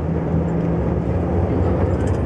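Steady low drone of a coach bus's engine heard from inside the passenger cabin, with a constant hum tone.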